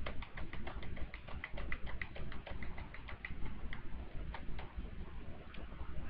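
Computer keyboard keystrokes typing a run of entries in quick succession, about four clicks a second, thinning out to scattered clicks in the second half.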